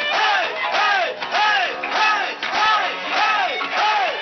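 Live rock band playing a repeated swooping figure that rises and falls in pitch about twice a second, with the crowd shouting along in time.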